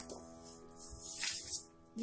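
Soft background music with held notes fading away, with a few faint scrapes of a spoon stirring thick milk in a steel pot, the clearest about one and a half seconds in.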